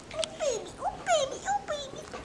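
Mini whoodle puppy whimpering and yipping in play: about half a dozen short whines, each quickly falling in pitch.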